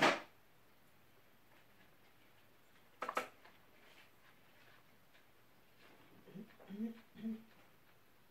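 A sip of whisky drawn noisily from a tasting glass, the loudest sound, then the glass set down with a short clink on a wooden table about three seconds in. Near the end come three short closed-mouth hums from the taster.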